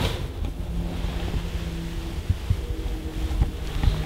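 Low rumble of handling noise on a handheld camera's microphone as the camera is moved, with a few soft knocks and a faint steady hum.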